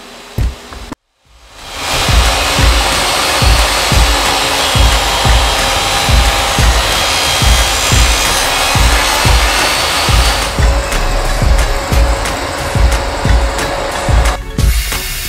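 Table saw ripping a plywood panel, a steady loud cutting noise that fades in after a brief silence about a second in. Background music with a steady drum beat plays over it.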